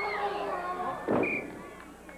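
Arena crowd yelling. About a second in, a single sharp smack rings out: a blow landing on a wrestler in the ring.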